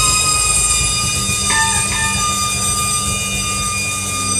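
Saxophone holding one long high note, with two quick flickers in the middle, over a bass and drum groove.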